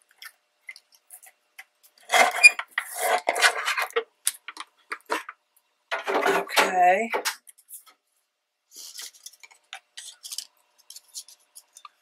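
Plastic paper trimmer being used and moved aside: a rattle of hard plastic knocks and scrapes about two seconds in, a shorter pitched squeak or sound around six seconds, then scattered small clicks of paper being handled.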